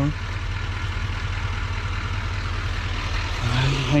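A GMC pickup's Duramax diesel engine idling steadily with a low, even hum, running as the booster vehicle while jumper cables charge a truck's dead battery.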